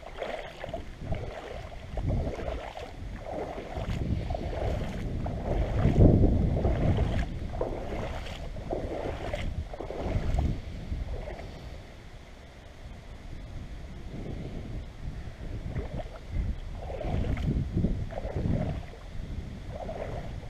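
River water sloshing and splashing close around a GoPro held at the water surface in a shallow river, in irregular swells every second or two, with a low rumble on the microphone.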